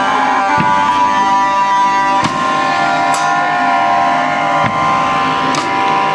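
Live band with an amplified electric guitar holding long, steady notes, and a few sharp drum hits spread through.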